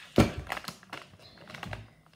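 A sharp knock, then a run of lighter taps and clicks from objects being handled close to the microphone.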